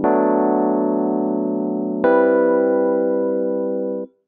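Logic Pro's Classic Electric Piano software instrument playing back a MIDI chord progression in E minor, revoiced into a different inversion. Two sustained chords, one at the start and a new one about two seconds in, each held and slowly fading.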